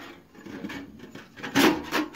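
An 18-litre tinplate can oven being picked up and turned over by hand, scraping and rubbing against cardboard. There is a louder scrape of the sheet metal about a second and a half in.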